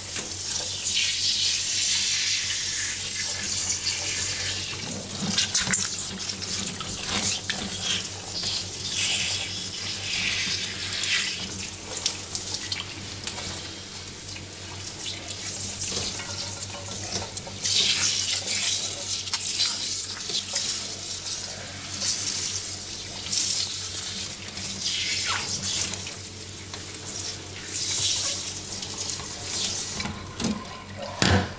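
Water from a hand-held salon spray nozzle running onto wet hair and into a backwash basin, its hiss surging and easing as the stream is moved and hands work through the hair.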